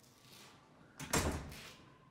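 A wooden door banging once, about a second in.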